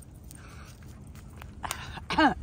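Footsteps on grass and dry leaves over a low rumble of wind on the microphone, with a sharp click near the end.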